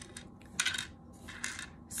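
Wooden letter tiles clicking and sliding against a hard tray and each other as fingers push them around, in a few short clatters, the loudest a little over half a second in.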